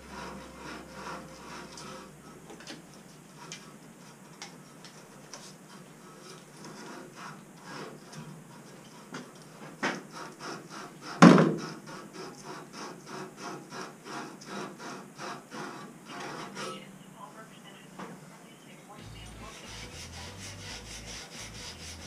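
PTFE (Teflon) thread-seal tape being wrapped tightly onto the threads of a pipe fitting: a run of short rhythmic rubbing strokes, two or three a second, with one sharp knock about halfway through.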